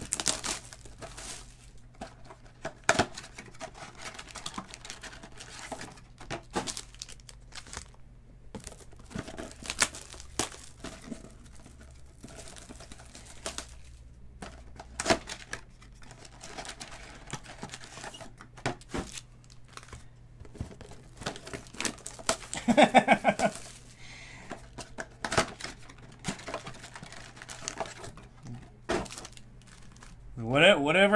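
Trading-card pack wrappers crinkling and tearing open, with cards handled and set down in stacks, in irregular crackles and clicks. A brief voice-like sound, such as a hum, comes about three quarters of the way through.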